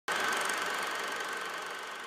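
Logo-intro sound effect: a broad hiss with a steady high tone in it, starting suddenly and slowly fading away.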